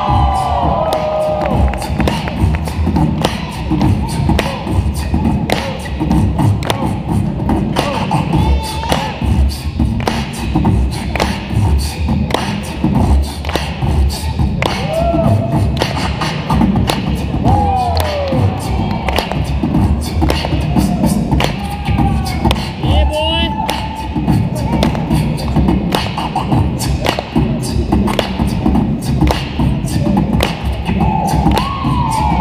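Loud hip-hop breakbeat music played by a DJ over a PA, with a steady, heavy drum beat and short vocal snatches every few seconds.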